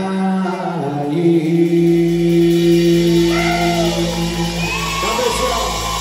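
Live country band with fiddle and acoustic guitar holding out a long closing note at the end of a song. A few whoops from the crowd rise and fall over it in the second half.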